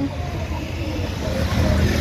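Town street traffic: a car driving past close by over the steady low rumble of engines, growing slightly louder near the end.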